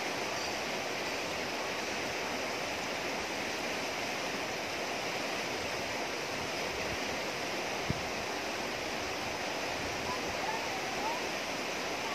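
Fast river rapids rushing over rocks, a steady even rush of water, with a single brief low thump about eight seconds in.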